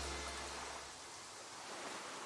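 Faint, steady wash of lake-water ambience, with a low music note dying away in the first second.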